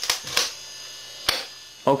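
Steady electrical hum, with a few sharp clicks over it, the clearest about a second and a half in.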